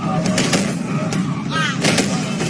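Dubbed fight-scene sound effects: several sharp hits over a steady low rumble, with a sweeping whoosh-like effect near the end.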